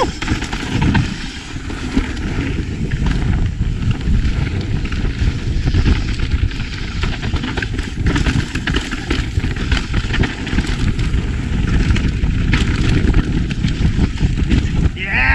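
Mountain bike descending a dry, loose dirt trail at speed: a loud, steady rush of wind on the camera's microphone with tyres on dirt and rock, and many short knocks and rattles from the bike over rough ground.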